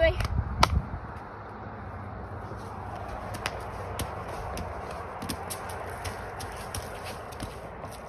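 Steady outdoor background hiss with a few faint clicks and taps, after a couple of low thumps in the first second.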